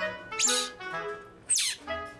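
Two high squeaky calls, each falling sharply in pitch, about a second apart: a baby otter calling. They sit over background music with a simple woodwind-like melody.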